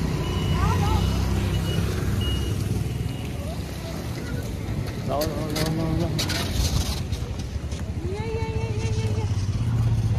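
Steady low engine drone and road noise of a moving road vehicle, heard from on board. A few short, faint high beeps sound in the first couple of seconds.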